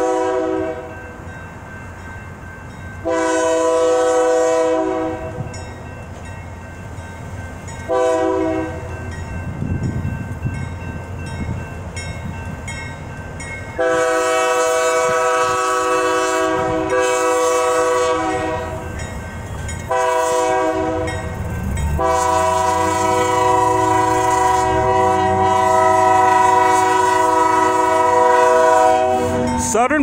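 Diesel freight locomotive horn sounding the grade-crossing signal on approach: two long blasts, a short one, then long blasts, the last held until the engine reaches the crossing. The locomotive's engine rumbles underneath, louder as it draws near.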